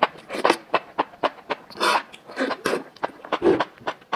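Mouth sounds of slurping and chewing sauce-coated enoki mushrooms: rapid wet smacking clicks, with a couple of longer sucking slurps about halfway through.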